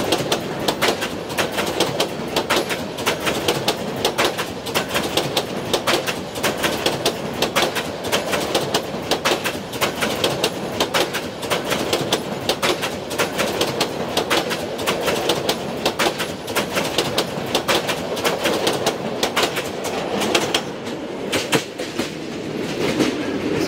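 Brahmaputra Express intercity passenger coaches passing close by at speed. The wheels clatter over the rail joints in a fast, steady run of clicks over a continuous rolling rumble.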